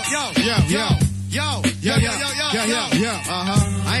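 Hip hop beat with a steady bass line and drum hits, with "yo" repeated many times in quick succession over it.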